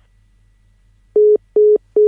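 Three short, loud, identical electronic telephone beeps at one steady pitch, starting about a second in: the tone of a phone call disconnecting. A low steady line hum lies underneath.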